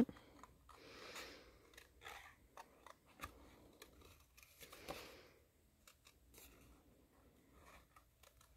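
Small scissors fussy-cutting around a stamped image on card, snipping close to the edge: faint, irregular snips and clicks.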